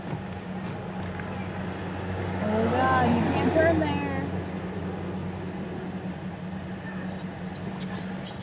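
Steady low hum of an idling car, heard from inside its cabin, with a voice speaking indistinctly for a second or two near the middle.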